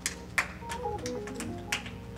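Quiet keyboard music of held, slowly changing notes, with about five sharp taps or clicks over it.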